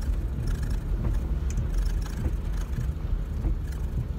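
Steady low rumble of a car's engine and road noise heard from inside the cabin while driving.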